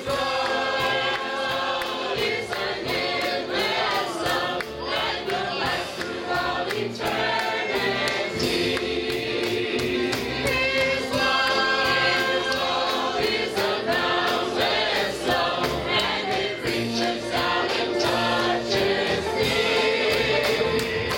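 Mixed church choir of men and women singing a gospel song together, with a steady beat behind them.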